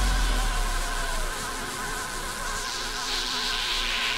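A drum and bass track in a breakdown with the drums dropped out. A deep sub-bass note fades away over the first second, under a buzzing, insect-like synth drone, and a hiss swells up near the end.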